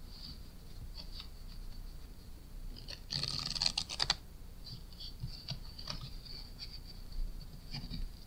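Playing cards riffled together on a cloth close-up mat in a table riffle shuffle, the Zarrow false shuffle: a rapid run of card flicks lasting about a second, a few seconds in. Scattered light taps and slides of the cards being handled before and after.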